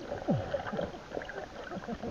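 Muffled underwater sound of a river, heard through an action camera's waterproof housing: scattered clicks and crackles, with a short falling tone about a third of a second in.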